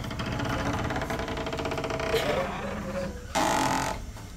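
A fast, even mechanical rattle, like a small engine running, for about the first three seconds, then a short, loud rasping noise near the end.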